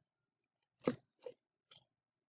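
Three short, sharp clicks about a second in, less than half a second apart, the first the loudest, with near silence around them.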